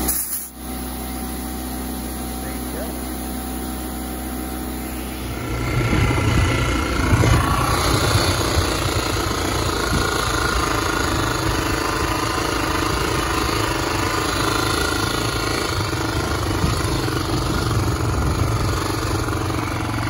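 Dirt bike engine running steadily, then from about five seconds in the bike is ridden away: a louder, rougher engine note with wind and road rumble on the microphone.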